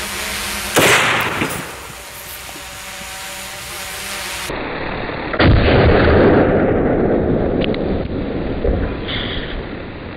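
A .50 BMG rifle firing: one sharp, loud report about a second in. About five and a half seconds in comes a second, duller report with a long tail, as the shot is heard again on another recording.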